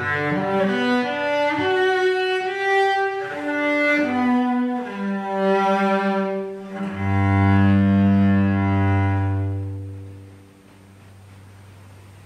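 Solo cello played with the bow: a melody of changing notes, ending on a long low held note that fades out about ten seconds in.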